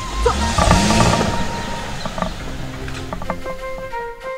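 Background music over a Mercedes-Benz SUV driving off: a low engine rumble and tyre noise swell in the first second or two, then fade under the music.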